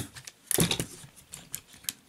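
A quick run of small, sharp clicks and rattles from the plastic and diecast leg parts of a transforming robot figure being handled and flexed by hand while its loose knee pin is worked on.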